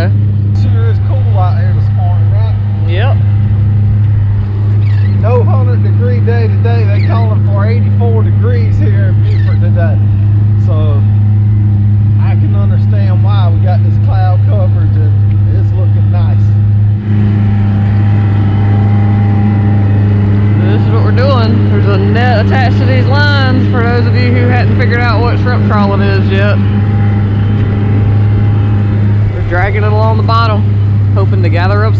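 Yamaha 90 hp outboard motor running steadily with the boat under way: a constant low drone.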